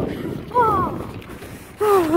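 A short vocal sound falling in pitch, like a brief cry or groan, about half a second in, over a faint outdoor wash of noise; a voice begins speaking near the end.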